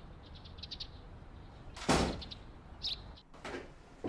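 Birds chirping briefly, then heavy thuds of footsteps coming down wooden stairs, the first about two seconds in, with another bird chirp in between.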